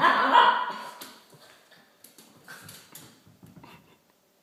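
Italian Greyhound barking at the start, the sound dying away within about a second, followed by faint scattered clicks and scuffs as the dog moves about on a hardwood floor.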